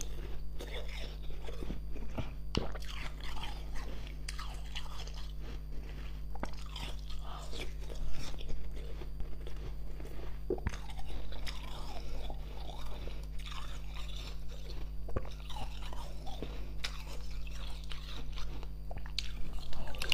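Close-miked crunching and chewing of ice frozen in a plastic water bottle, with many sharp bites and crackles; the loudest crunch comes about eight seconds in. A steady low hum runs underneath.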